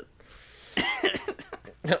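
A man's breathy, non-speech vocal sounds: a rush of breath, then a short burst of throaty vocal noise about a second in.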